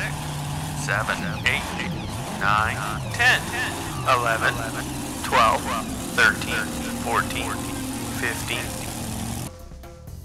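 Cartoon monster truck engine sound effect revving up and down, with a run of short, high cries layered over it. It cuts off suddenly near the end.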